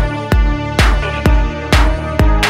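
Electronic dance track: a steady kick drum about twice a second under sustained synth chords.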